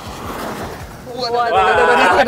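Mitsubishi Pajero Sport driven at about 60 km/h over rough, patched asphalt: a rush of tyre and road noise for about the first second, then a voice exclaims.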